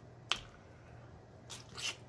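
Close-up eating sounds of a seafood boil eaten by hand: one sharp click about a third of a second in, then a short crackly burst near the end as food is bitten or pulled apart.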